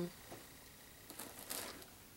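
Faint rustling of a fabric project bag and yarn as a hand rummages inside and lifts out a ball of yarn, with a few soft scuffs in the second half.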